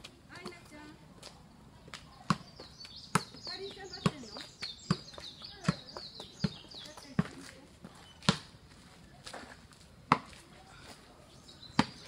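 A soccer ball being juggled with the outside of the foot, each touch a sharp kick: a run of about seven touches just under a second apart, then a few more spaced out.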